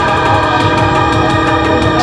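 Loud live electronic music from synthesizers and a drum machine. A sustained, horn-like synth chord of several steady tones is held throughout, over quick regular hi-hat-like ticks and a pulsing low bass.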